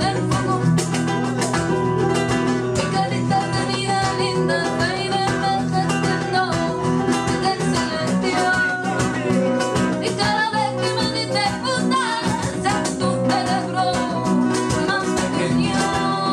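Two acoustic guitars strumming in a rhythmic Latin style over cajón hand-drumming, with a woman singing a wavering melodic line above them.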